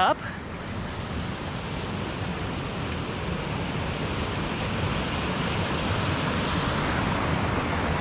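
Small mountain waterfall rushing in a steady stream of white noise, growing gradually louder.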